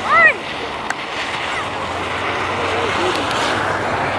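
Children shouting and squealing while sledding. A loud, high yell comes just after the start, and fainter calls follow, over a steady hiss.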